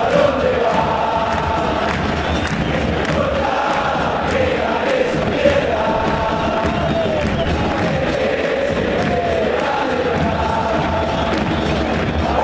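A huge football crowd in a packed stadium singing a chant together, a steady mass of voices holding a tune.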